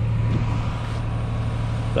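Steady low drone of an engine running at constant speed, with a faint steady higher tone above it.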